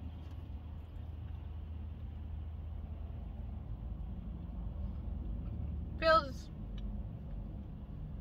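Steady low vehicle rumble, as heard inside a car. About six seconds in, a woman makes one short, loud vocal sound with a falling pitch between bites.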